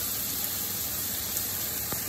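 Steady sizzle of sliced mushrooms and chopped shallots frying in oil in two pans.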